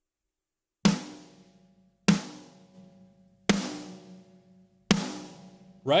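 Soloed, layered metal snare drum bus played back: four single snare hits about 1.3 seconds apart, each with a sharp crack and a long ringing sustain. It is heavily compressed through a Distressor-style compressor set to slow attack and fast release, which lets the transient through and brings out the sustain.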